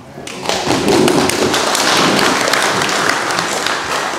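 Audience applauding: dense clapping that swells quickly, holds, and tapers off near the end.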